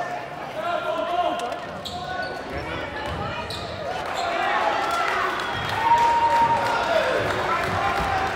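Basketball game crowd in a school gym: spectators talking and calling out over the thud of a basketball bouncing on the hardwood floor, with short sharp clicks and one long held note about six seconds in.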